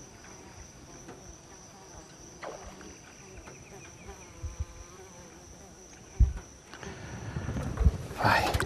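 Steady high-pitched insect drone, with a few dull low thumps in the second half.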